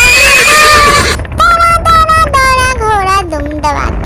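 Horse whinnying: a rough, quavering high call in the first second, then a longer call that falls in pitch.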